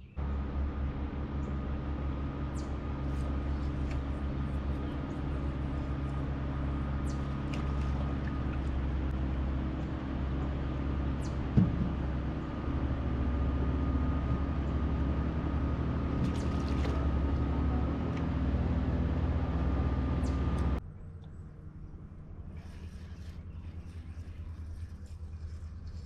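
A motor running steadily as a low, rumbling drone with a faint thin whine above it, with one sharp knock about halfway through. The drone cuts off suddenly a few seconds before the end.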